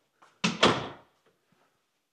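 An interior door closing: two quick knocks about half a second in, with a short ring-off.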